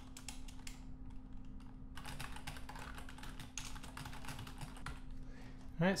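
Typing on a computer keyboard: runs of quick key clicks, with a short lull about a second in.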